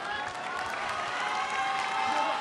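Audience applauding, many hands clapping at a steady level.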